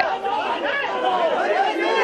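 A crowd of men talking over one another, several voices at once in a busy hubbub.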